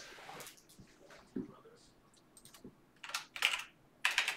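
Faint computer keyboard typing: a few scattered keystrokes, then a quick run of taps near the end.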